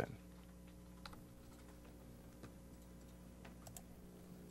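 A few faint clicks from a computer keyboard being used, about a second in and again near the end, over a steady low electrical hum.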